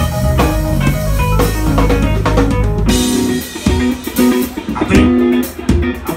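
Live band playing an instrumental passage on electric guitar, bass guitar and drum kit. About three seconds in, the full sound thins to a sparser, stop-start groove of separate drum hits and short bass and guitar notes.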